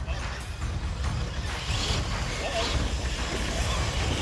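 A steady low rumble on the microphone outdoors, with faint voices in the background.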